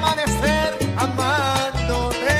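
Salsa band playing, a melody line rising and falling over a bass pattern that repeats in short phrases.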